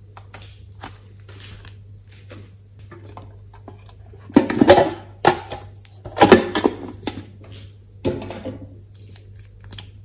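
Soft sticky clicks of glossy slime being squeezed in the hands, then three louder clattering handling noises about four, six and eight seconds in as a small metal tin case is handled and a tube taken out of it. A steady low hum runs underneath.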